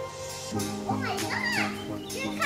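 A child's high voice calling out with a rising and falling pitch about a second in, over background music.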